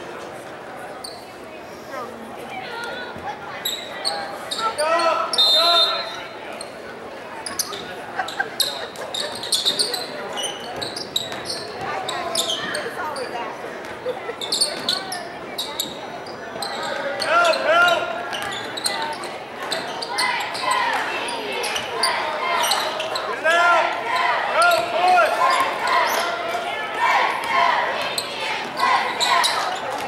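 A basketball bouncing on a hardwood gym floor, with shouting voices from players and spectators, echoing in a large hall. The bounces and calls grow busier from about halfway through.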